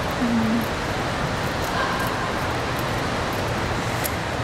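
Steady rushing noise of running water circulating in an aquarium touch pool, with a short low whine about a quarter of a second in.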